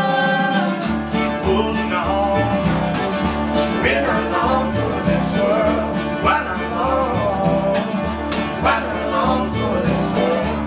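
A small acoustic string band playing live: strummed acoustic guitars, fiddle and upright bass, with a sung vocal line coming in about a second and a half in.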